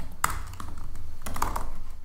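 Typing on a computer keyboard: a handful of irregular keystroke clicks.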